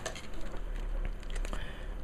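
Clear plastic clamshell packaging crinkling and clicking against a cardboard box as it is pulled out and handled.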